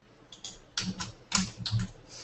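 Typing on a computer keyboard: a quick run of about seven keystrokes, the loudest about halfway through.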